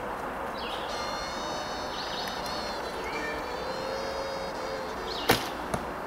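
A traditional bow shot: one sharp snap of the bowstring being released about five seconds in, then a fainter click about half a second later, against a steady woodland hiss with birds calling.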